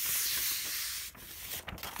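A palm rubbing a sheet of paper down onto a gelli plate: a dry swishing hiss. It eases off about halfway, and a few light taps follow.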